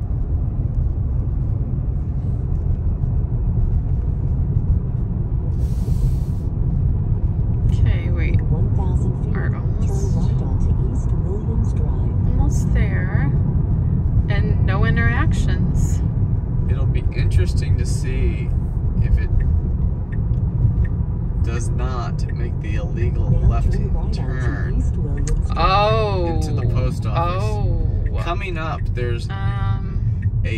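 Steady low road and tyre rumble inside the cabin of a moving Tesla electric car, with voices now and then.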